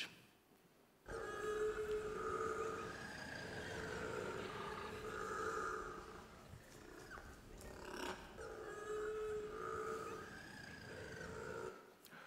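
Little penguin (kororā) calling: long, drawn-out braying calls that waver in pitch, starting about a second in, in two spells with a short break around seven seconds in.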